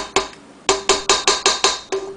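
A spatula tapped rapidly against the metal of a stand mixer, about five knocks a second, each with a short ringing note of the same pitch.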